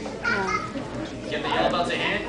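Children's voices chattering, with no clear words.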